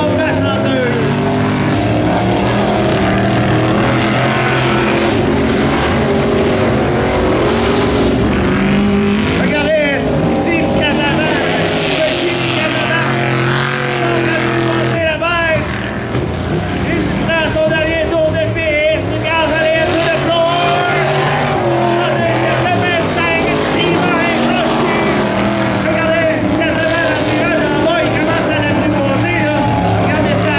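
Modified dirt-track race car engine revving hard, its pitch rising and falling as it accelerates out of the turns and lifts into them.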